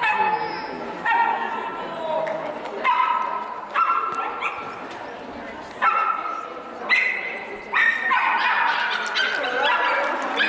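Miniature schnauzer barking in repeated high-pitched yaps, about one a second, while running an agility course.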